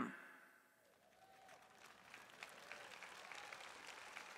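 Near silence after the speaking stops, then faint applause from an audience in the second half.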